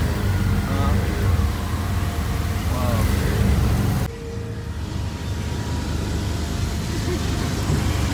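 Auto-rickshaw running along a road, its engine and road noise heard from inside the open cabin as a steady low rumble. The rumble drops suddenly about halfway through.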